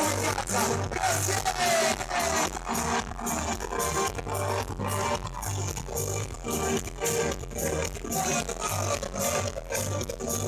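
A live band playing a song: guitars and keyboards over a steady, pulsing bass and beat.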